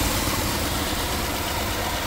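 BMW X6 (E70) engine idling steadily with the air conditioning switched on: an even low rumble under a steady hiss.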